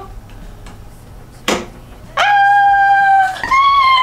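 A voice gives a short sharp cry about a second and a half in, then holds two long high notes, the second pitched higher than the first.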